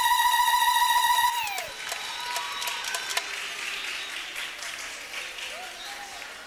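A woman's high, trilling ululation (zaghrouta), held on one pitch and dropping away about a second and a half in, then applause and crowd chatter.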